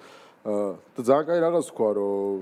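A man speaking in a studio conversation, after a brief pause at the start.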